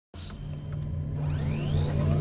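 Cinematic intro sound design: a deep, steady rumble that starts abruptly. A thin high tone sounds in the first half-second, then rising sweeps build up over the second second.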